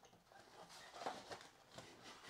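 Near silence, with a few faint rustles and taps as a cardboard Bowman Mega Box is opened and its foil card packs are handled.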